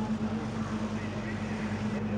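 A steady low drone of an engine running, over a constant background rumble.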